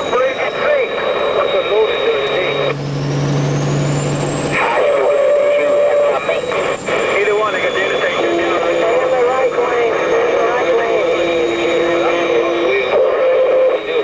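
CB radio chatter in a truck cab: distorted voices that cannot be made out, with steady whistling tones and a slowly wavering high whine bleeding through, over the truck running down the road.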